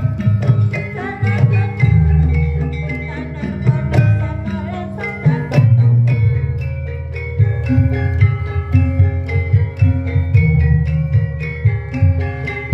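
Javanese gamelan-style music playing loudly: struck metal keys carry a melody over steady drum beats.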